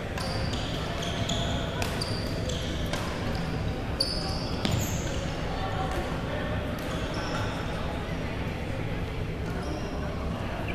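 Echoing chatter of many voices in a large gymnasium, with scattered sharp knocks and brief high-pitched squeaks on the hardwood court.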